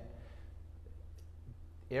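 Pause in speech, leaving a steady low hum of room tone with one faint click about a second in.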